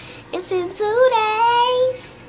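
A young girl singing: a short phrase that rises in pitch into one long held note.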